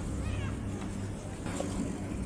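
Chairlift ride: a steady low rumble from the moving lift and air, with a short high-pitched squeal near the start.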